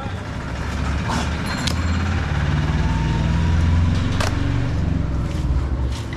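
A motor vehicle's engine rumbling as it passes close by, swelling to its loudest about three to four seconds in and then easing. Three sharp knocks of the butcher's knife on the wooden chopping block come over it.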